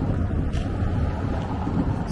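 Wind buffeting the microphone: a steady, low rumbling noise.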